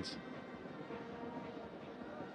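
Faint, steady background ambience of a football stadium heard through the match broadcast.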